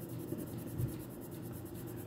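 Coloured pencil shading back and forth on journal paper: a faint, steady scratching.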